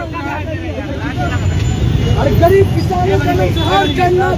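Several men's voices talking and calling out over one another in a street crowd, over a steady low rumble of road traffic.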